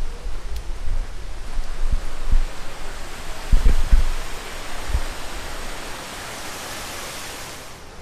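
Fountain water rushing and splashing, a steady hiss that grows louder toward the end and cuts off suddenly, with a few low thumps of wind buffeting the microphone.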